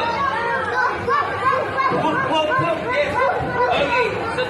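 A class of young children talking and calling out at once, many high voices overlapping in a loud chatter in a large room.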